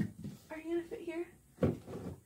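Canvas painting knocking against the wall as it is hung and set straight: a dull thump at the start and a second, stronger one about one and a half seconds in.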